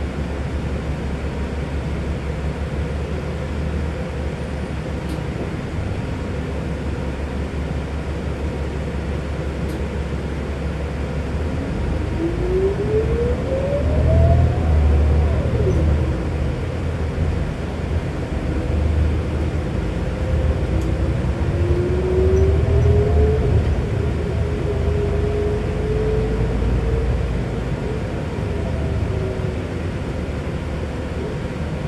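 New Flyer XD60 articulated diesel bus heard from inside while under way: a steady low engine and road rumble. About twelve seconds in, a whine climbs and then drops off sharply as the bus accelerates, and further rising whines follow in the second half.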